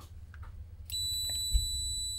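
Continuity beeper of an ET14S thermal-camera multimeter sounding one continuous high-pitched bleep, starting about a second in as the shorted test probes make contact. There is a soft knock partway through.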